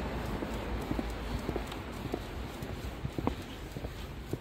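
Footsteps of a person and a leashed dog on wet pavement: a quick, uneven tapping, a few steps a second.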